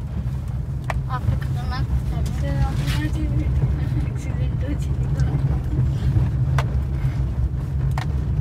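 Steady low rumble inside a car's cabin as it drives over a rough, unpaved gravel road, with a few sharp knocks from the bumpy surface. Faint voices are heard about one to three seconds in.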